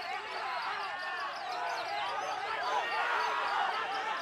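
Many caged songbirds singing at once: a dense overlap of rising and falling whistled phrases, with a white-rumped shama (murai batu) among them.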